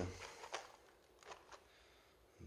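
A few faint light clicks from handling a plastic screwdriver-bit case and its metal bits: one about half a second in and two close together a little later.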